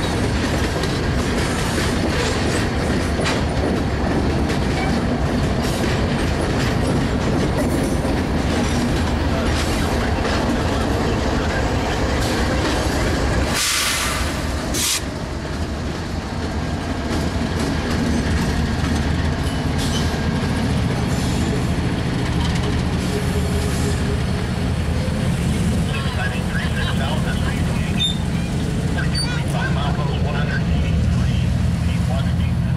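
Freight train of tank cars rolling past with wheels rumbling and clicking over the rails, with a short hiss near the middle. In the second half a Canadian Pacific diesel locomotive in the train goes by, adding a steady low engine drone.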